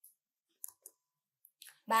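Near silence with a few faint, brief clicks, then a voice starts speaking just before the end.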